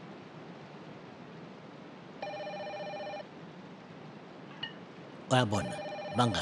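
A telephone ringing: one ring about a second long a couple of seconds in, then the next ring starting near the end, under a voice.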